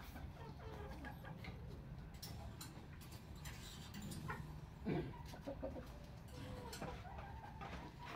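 Chickens clucking faintly, with a few short calls, the most distinct about five seconds in.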